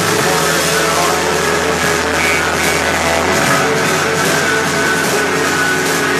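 Screamo/blackgaze band playing live at full volume: a dense wall of distorted electric guitars over sustained bass notes and drums with a constant cymbal wash. The low bass note shifts to a new one about three and a half seconds in.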